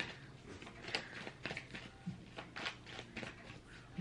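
A tarot deck being shuffled by hand: a run of quick, irregular soft flicks and slaps of card against card.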